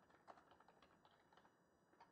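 Faint computer keyboard typing: a quick, uneven run of soft key clicks.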